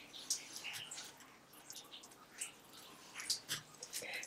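Metal-tipped scoring stylus drawn along the grooves of a plastic scoring board through cardstock, making faint, short scratches and small ticks as each score line is pressed in.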